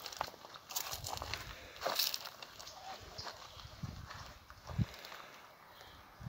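Footsteps on a dirt and stone path: irregular steps and scuffs, with a few duller low thuds.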